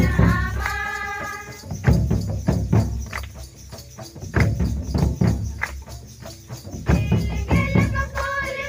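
A group of women singing a welcome song to percussion accompaniment. The voices are strong in the first second or so, thin out in the middle while the rhythmic percussion strokes carry on, and come back in near the end.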